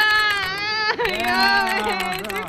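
A person's voice making two long drawn-out vocal sounds, the first higher-pitched and the second lower, each lasting about a second.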